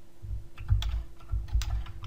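Computer keyboard typing: about half a dozen separate keystrokes, each a short click with a dull thud, at an unhurried pace.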